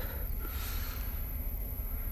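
Low, unsteady rumble of background noise on the microphone, with a soft breath-like rustle about half a second in.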